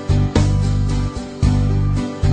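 Background music: a guitar tune with a steady strummed beat.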